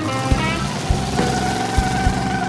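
Background music: a melody of held notes over low drum beats.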